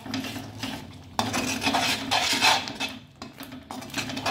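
A slotted metal spatula scraping and stirring thick masala paste around a metal kadhai, in repeated strokes that are loudest from about a second in and ease off near the end.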